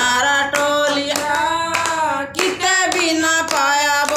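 A small group of women singing a Hindu devotional bhajan together, with a long drawn-out melodic line, and clapping their hands in a steady rhythm to keep time.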